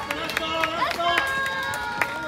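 Roadside spectators clapping in a quick, uneven rhythm of a few claps a second, with voices calling out over it.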